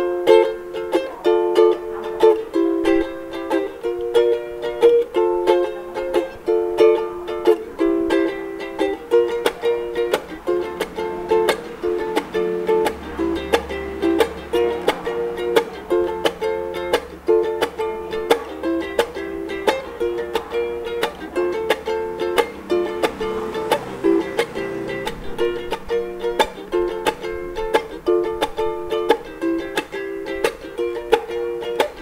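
Ukulele strummed in a steady rhythm, cycling through G, D, Bm and A chords.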